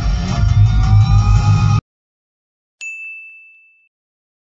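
Background music cuts off abruptly, and about a second later a single bright ding sound effect rings out and fades away over about a second.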